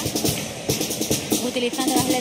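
A carnival chirigota's small band playing a lively instrumental passage: guitar with a drum kit, its bass drum and snare striking several times a second.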